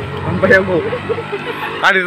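Voices talking, with the small engine of a passing auto-rickshaw running steadily underneath; the talk gets louder near the end.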